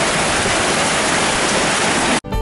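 Heavy rain falling, a loud steady hiss.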